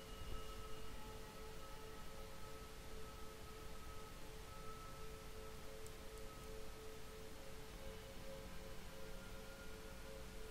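Faint background music of a few steady, held tones, a meditation-style drone like a singing bowl or tuning fork.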